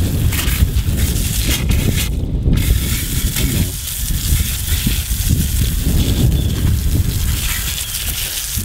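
Garden hose spray nozzle jetting water onto freshly dug cassava roots on concrete: a steady hiss and spatter, with heavy wind rumble on the microphone underneath. The hiss drops out briefly about two seconds in.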